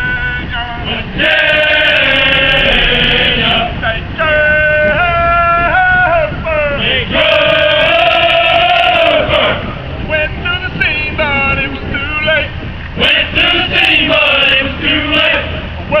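A group of voices singing a song together, men and women, in phrases of long held notes with short breaks between them. The words "West Virginia" come at the very end.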